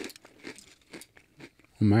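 Japanese rice crackers being chewed close to the microphone: a few short, sharp crunches with quiet between them.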